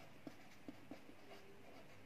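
Faint pen writing on paper, a few soft scratchy ticks from the pen strokes against near silence.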